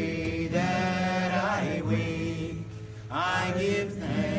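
Voices singing a slow chant, with long held notes that slide in pitch twice, over a steady low drone.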